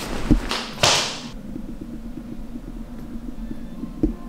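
A soft thump, then a quick loud whoosh about a second in, followed by a low steady hum.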